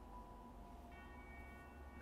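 Near silence, with faint sustained background music notes; a few higher notes come in about a second in.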